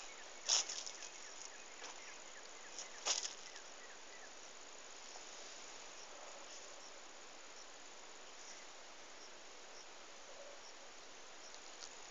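Faint steady chirring of field insects such as crickets, with two short crackling rustles, about half a second and about three seconds in, as cotton leaves brush close to the microphone.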